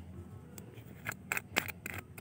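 Handling noise: a quick run of about five sharp clicks in the second half, over a low steady hum.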